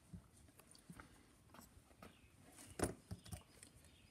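Faint, scattered clicks and taps of small metal parts and hand tools being handled on a workbench, with the loudest click about three seconds in and two lighter ones just after.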